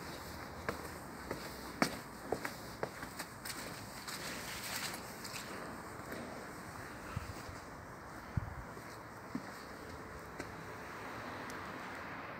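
Footsteps on a tiled outdoor patio scattered with fallen leaves: light, irregular steps and scuffs, closest together in the first few seconds and sparse after that.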